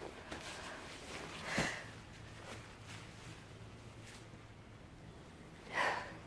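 A person's breathing: two short, sharp breaths, one about a second and a half in and one near the end, over faint quiet ambience.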